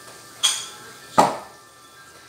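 Wooden pestle pounding mashed boiled bananas in a stainless steel pot: two strikes under a second apart, the first with a brief metallic ring from the pot, the second louder.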